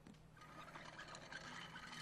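A faint, soft hissing noise from the cartoon's soundtrack, coming in about half a second in and holding steady.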